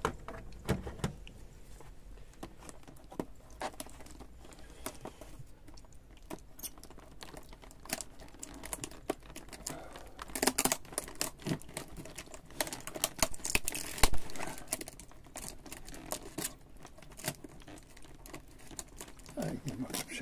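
Cardboard box and plastic-wrapped pet-food packs being handled: crinkling and rustling with scattered knocks, busiest about halfway through and with one louder knock about two-thirds of the way in.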